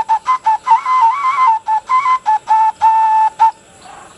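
Xutuli, an Assamese clay vessel whistle, played with the fingers: a loud, high whistling tone in a quick run of short stuttered notes, then longer held notes that step up and down between a few close pitches, stopping about half a second before the end.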